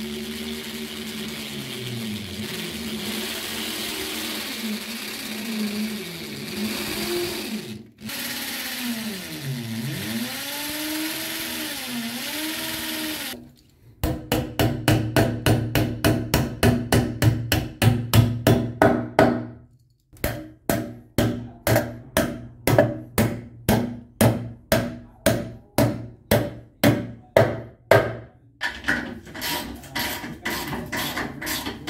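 A cordless drill boring into the wall, its motor whine wavering in pitch under load, with a brief stop about eight seconds in and cutting off about halfway through. Then a hammer striking in quick, regular blows, slowing to about two blows a second.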